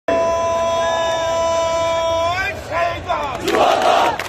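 A man shouting a slogan call at a rally, holding one long high note for about two seconds, then rising into a few quick words. Near the end the crowd of protesters shouts back together in response.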